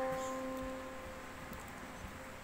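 Middle C played as a single note on a Korg digital keyboard, struck just before and fading away over about a second and a half.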